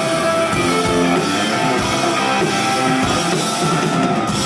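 Live rock band playing an instrumental passage: electric guitars strumming over a drum kit, loud and steady.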